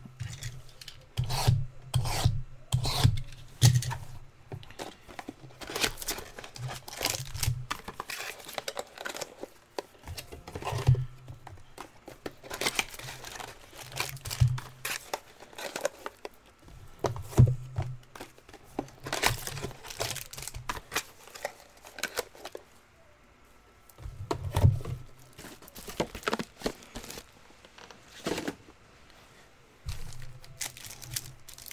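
Hands unwrapping and opening a sealed box of trading cards: cellophane and cardboard handled in irregular bursts of scraping and crinkling, with dull low knocks every few seconds.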